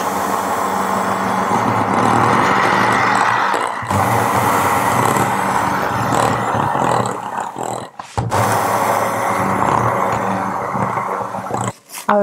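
Electric hand mixer running steadily, its beaters whipping a partly frozen ice cream mixture in a glass bowl. There are three stretches of motor whir, cut by brief gaps at about four and about eight seconds.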